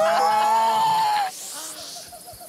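A woman's long, high-pitched squeal of delight, rising and then held, stopping just over a second in.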